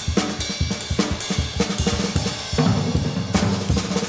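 Jazz drum kit played busily in a trio recording, with snare, bass drum, cymbals and hi-hat strokes coming thick and fast in front of everything else.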